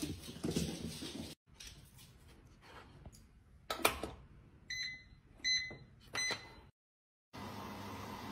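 A click, then a front-loading washing machine's control panel beeping three times, short even beeps about 0.7 seconds apart, as its buttons are pressed.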